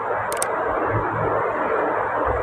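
Steady background noise, an even rushing hiss with no clear pitch, and a brief click about half a second in.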